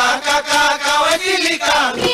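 Bihu folk song: singing with long, wavering held notes that slide in pitch, with dhol drum beats coming back in near the end.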